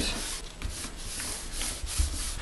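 Hands rubbing and smoothing a sheet of patterned paper down flat onto a chipboard binder cover, pressing it onto double-sided adhesive. It is a dry, papery rubbing made of several uneven strokes.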